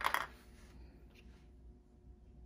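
Brief plastic handling noise as a small measuring scoop for impression putty is set down and another picked up, right at the start, then quiet room tone with a faint tap about a second in.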